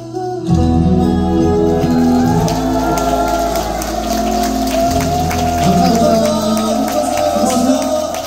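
Male vocal trio singing live into handheld microphones over a pop backing track, which comes in with heavy bass about half a second in.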